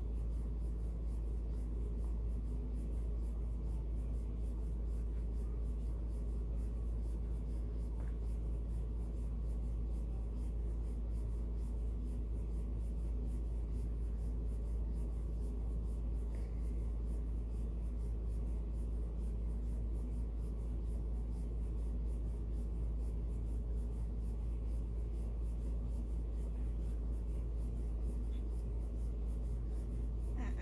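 Soft scratching of a paintbrush stroking paint onto the bare wood of a small birdhouse, over a steady low hum.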